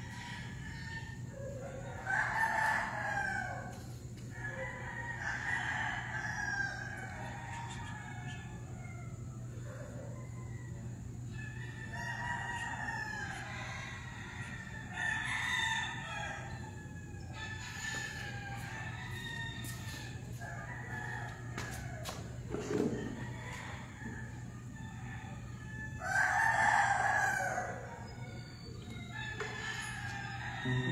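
Roosters crowing several times, each crow a second or two long, the loudest about two seconds in and near the end, over a steady low hum.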